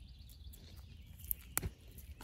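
Grass weeds being pulled by hand from mulched garden soil: quiet, with two short clicks about one and a half seconds in.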